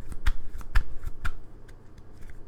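Tarot deck being shuffled by hand: a run of sharp card slaps, about four a second, that stops about a second and a half in.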